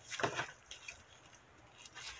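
Faint handling sounds of scissors and a tissue-paper-wrapped package: a short cluster of clicks and rustles in the first half second as the scissors are picked up, then a few light ticks as the blade is brought to the washi tape.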